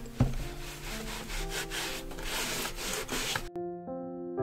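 A tissue rubbing back and forth over a painted wooden strip, wiping on or off a red stain with white spirit, with a sharp knock on the wood about a quarter-second in. The rubbing cuts off suddenly near the end, leaving soft piano music.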